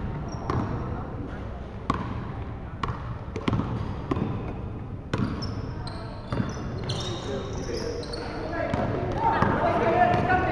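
Basketball dribbled on a hardwood gym floor, sharp bounces coming irregularly about once a second, in a large echoing sports hall. Players' shouts and voices mix in, with a few short high sneaker squeaks on the floor in the second half.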